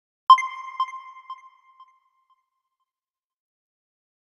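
A single bright chime sound effect, struck once about a third of a second in and echoing in fading repeats about every half second until it dies away at about two seconds.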